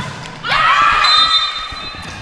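Indoor volleyball rally: the ball thudding as it is played, then a high, drawn-out sound from about half a second in.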